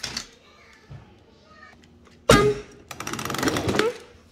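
A person's wordless vocal sound effect: a short click at the start, a loud voiced cry about two seconds in, then about a second of fast rattling rasp that stops just before the end.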